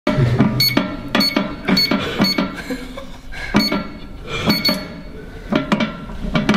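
Electronic safe keypad beeping as its buttons are pressed, about seven short high beeps at an uneven pace while the code is entered. Near the end come several clicks without beeps, from the door knob being gripped and turned once the code is accepted.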